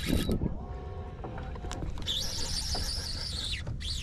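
Baitcasting reel's drag giving line to a hooked, fast-running fish: short squealing tones in the first half, then a high buzzing run of drag for about a second and a half.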